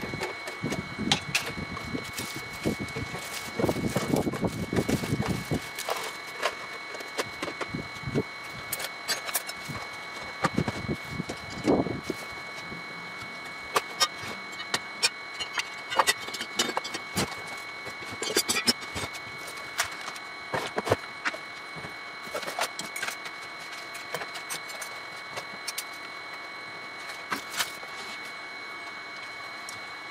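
Scattered clicks, knocks and rattles of tools, plastic containers and small parts being handled and set onto shelves, busiest a few seconds in and again near the middle. A faint steady high whine runs underneath.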